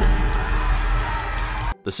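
A loud rushing noise with a deep rumble under it. It starts suddenly and cuts off abruptly after about a second and three quarters: an edited-in transition sound effect.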